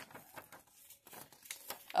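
Sheets of paper rustling and crinkling as they are handled, in a few short, scattered rustles.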